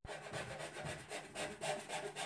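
A hand tool working wood in short, evenly repeated strokes, about three to four a second, like sawing or rasping at a workbench.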